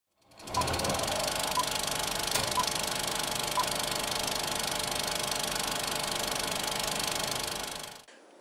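Film projector sound effect: a fast, steady mechanical clatter with hiss. Four short high beeps come one second apart early on, like a film-leader countdown. The clatter fades out near the end.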